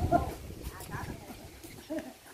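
Faint voices of bystanders talking in the background, strongest right at the start and again about a second in.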